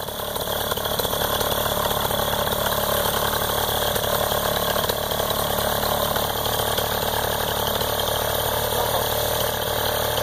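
Backpack paramotor engine idling steadily.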